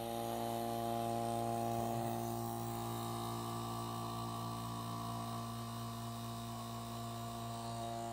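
An electric vacuum pump running with a steady, even hum, pulling the air out of the sealed boiler-and-condenser loop of a Tesla turbine rig.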